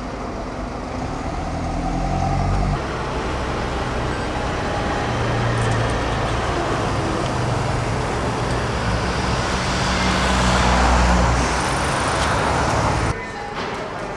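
Engine of a vintage single-deck bus running as it drives past, growing louder to a peak about ten to eleven seconds in, with traffic noise around it. The sound jumps about three seconds in and cuts off suddenly near the end.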